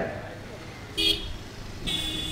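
A pause in a man's speech at a microphone. About a second in there is one short, distant toot like a vehicle horn.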